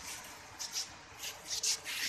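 Faint rubbing and scuffing noises over a low hiss, with a few short scrapes in the second half.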